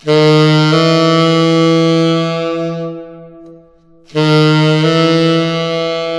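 Tenor saxophone playing a half-step approach twice: a short tongued F slurred up to a held F-sharp. The second phrase begins about four seconds in. The F-sharp is fingered with the small alternate key above the D-sharp key, so the note moves up without breaking.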